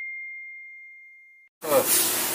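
An edited-in ding sound effect: the tail of a single high, pure ringing tone that fades away slowly and dies out about one and a half seconds in, with the rest of the soundtrack cut to silence.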